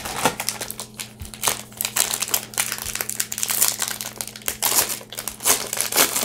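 A trading-card pack wrapper being torn open and crinkled by hand: a dense, irregular run of crackles, over a faint steady low hum.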